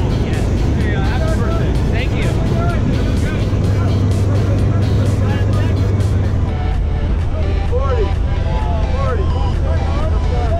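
Steady drone of a jump plane's engine and propeller heard inside the cabin during the climb, with a low hum that grows stronger for a few seconds in the middle.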